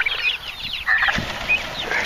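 Young Narragansett turkeys and chickens calling: many short, high chirps and peeps overlapping, with a single low knock a little after a second in.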